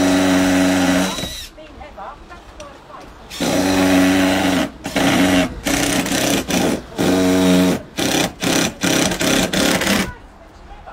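Cordless drill run up into a timber batten overhead: one long run that stops about a second in, a second long run a couple of seconds later, then a string of about eight short trigger bursts.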